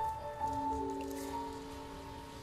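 Slow instrumental music for a figure skating free program, with long held notes.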